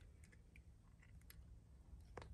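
Near silence: a low room hum with a few faint clicks from a hand wire stripper being worked on a thin wire.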